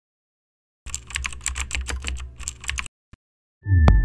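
Computer keyboard typing sound effect: a quick run of key clicks lasting about two seconds, then one more click. The opening of a musical sting comes in just before the end.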